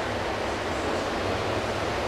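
Steady background noise of an indoor pool hall: air handling and water circulation filling the room with an even hiss over a low hum.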